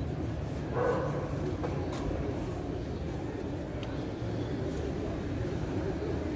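Steady low background rumble in an open courtyard during a silent ceremony, with one short, sharp call about a second in.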